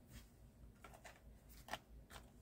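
Near silence: room tone with a few small clicks, the loudest about three-quarters of the way through.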